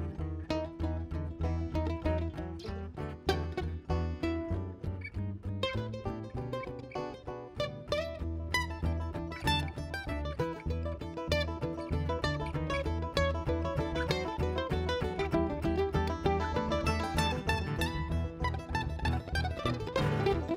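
Live bluegrass string band playing an instrumental passage: mandolin picking prominently over acoustic guitar and upright bass.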